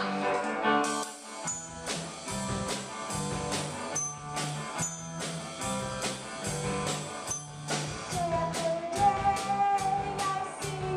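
Live rock band playing: a drum-kit beat with bass guitar and electric guitar. The music thins out briefly about a second in, then the full beat comes back, and a woman's singing comes in near the end.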